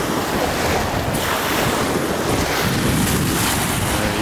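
Small waves washing up on a sandy shore, with wind buffeting the microphone in a steady low rumble.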